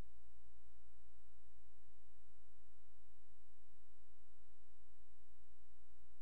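Steady electrical hum: a low buzz with a set of faint, unchanging higher tones above it, holding at the same level throughout with no other sound.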